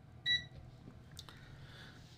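Peakmeter PM18C digital multimeter's buzzer giving one short, high beep as its hold/backlight button is pressed, followed about a second later by a faint click.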